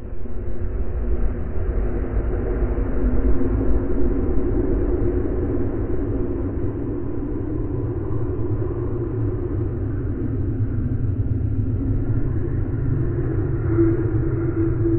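A steady, deep rumbling drone with faint sustained tones held above it.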